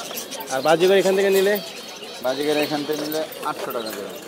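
Two long, low coos from a domestic pigeon, each about a second long, over a busy market background.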